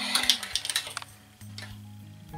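Background music of steady held notes, with a quick run of light metallic clicks in the first second as metal bias tape makers are set down and shuffled on a tabletop.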